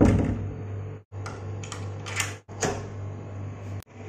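Clicks and knocks of a wooden door's metal lever handle and latch as the door is worked open, the loudest at the start, over a steady low room hum.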